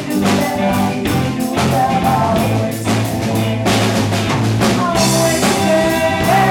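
A live rock band playing, with drum kit, bass guitar and electric keyboard, and a woman singing the lead with held notes over a steady beat.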